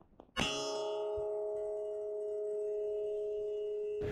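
A muzzleloader bullet strikes a steel target plate about a third of a second in, and the plate rings on with a steady, bell-like tone: the sound of a hit on steel.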